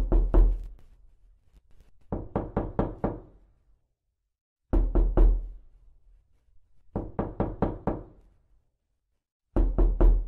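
Knocking on a door in a repeating rhythm: two heavy knocks followed by five quicker knocks, the pattern heard twice, with two more heavy knocks near the end. Short silences lie between the groups.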